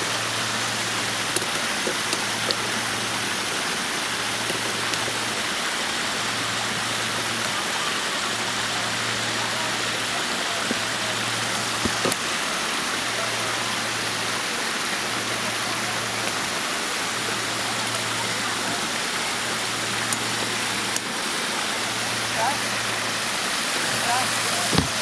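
Steady rush of water from a small garden waterfall spilling over rocks into a pond. Under it, a low hum pulses on and off about every two seconds.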